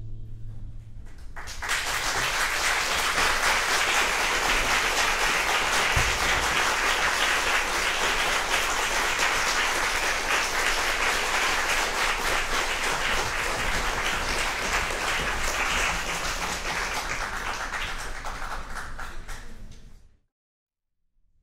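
The last bowed cello chord dies away, then audience applause starts about a second and a half in. The applause goes on steadily, thins near the end and cuts off abruptly.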